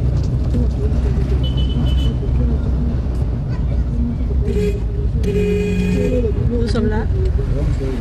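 Inside a taxi in city traffic: steady engine and road rumble with voices talking over it. A car horn sounds for about a second around the middle, just after a shorter toot.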